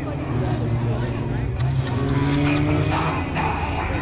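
IMCA Sport Compact race cars' four-cylinder engines running on the track, one engine note climbing slowly in pitch for about three seconds before easing off near the end, with voices over it.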